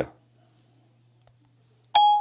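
A short electronic chime from an iPhone near the end, the tone iOS plays as voice dictation stops, over a faint steady low hum.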